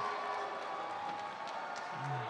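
Crowd noise from a spectator audience: a steady wash of cheering and applause.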